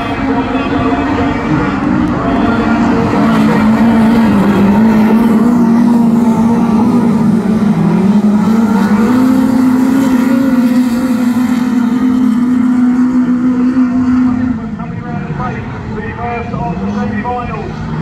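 Several autograss race cars running hard on a dirt oval, a loud engine note rising and falling in pitch as they lap. It drops away suddenly about three-quarters of the way through, as the cars move off.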